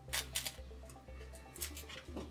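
Tear-away stabilizer fabric being ripped off the stitching of a small sewn fabric piece by hand: a few short, quick tears, two near the start and more near the end, over quiet background music.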